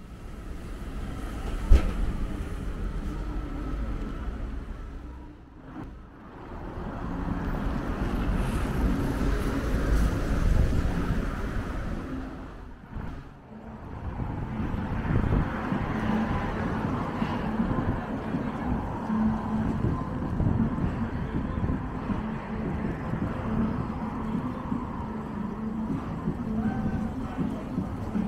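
City road traffic: cars and buses passing with a steady rush of tyre and engine noise, and a sharp click about two seconds in. The sound dips briefly twice, near six and thirteen seconds.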